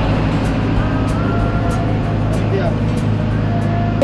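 Steady low drone of a ferry's engines and machinery, heard on its vehicle deck, with music playing over it and faint voices.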